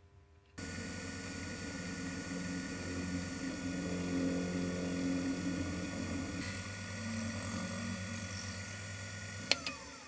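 Benchtop milling machine starts up about half a second in, its spindle motor running steadily while a small twist drill cuts holes in a stainless steel piece. Near the end there is a sharp click as it is switched off, and the motor's whine falls in pitch as the spindle winds down.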